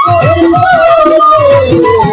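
Violin playing a slow melody that slides downward with a slight waver, over a drum keeping a steady beat, in Bengali baul folk music.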